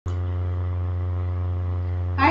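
A steady low electrical hum with a buzzy edge, picked up by the recording microphone; it starts abruptly as the recording begins and holds constant.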